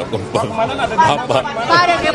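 Speech only: several people talking over one another, with questions and a brief reply.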